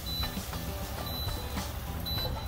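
Portable induction hob giving short high beeps about once a second, its warning that the pan has been lifted off. A wooden spoon scrapes food from a stainless pan into a steel bowl.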